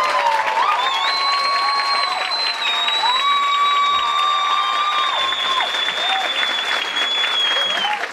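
A theatre audience applauding and cheering at the end of a performance, with long, high whistles held over the clapping.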